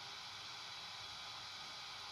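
Faint steady hiss with no distinct events: background noise.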